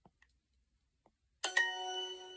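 Duolingo's correct-answer chime from the tablet's speaker: a short, bright ding that starts suddenly about one and a half seconds in and rings out, marking the typed translation as right. A couple of faint taps on the touchscreen come before it.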